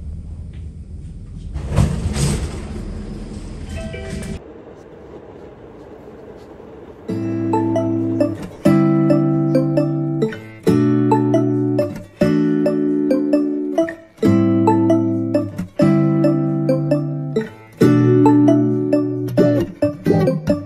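Metro train cabin noise for the first four seconds or so: a steady rumble with a louder rush about two seconds in. After a short quieter gap, background lofi music with a repeating chord pattern starts about seven seconds in and carries on.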